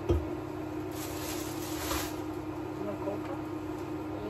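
Groceries being unpacked on a kitchen counter: a thump as an item is set down just after the start, then about a second of rustling packaging, over a steady low hum.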